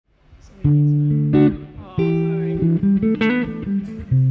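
Telecaster-style electric guitar playing slow sustained chords, starting about half a second in and changing chord every second or so.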